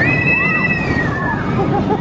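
Roller coaster riders screaming as the train passes, several high held screams over the noise of the train running on its track; the screams fade out after about a second and a half.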